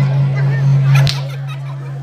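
A steady low held tone, with one sharp crack about a second in, after which the tone carries on more faintly.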